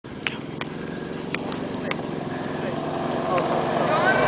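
Golf cart engine running steadily and growing louder as the cart approaches, with five sharp ticks scattered through it.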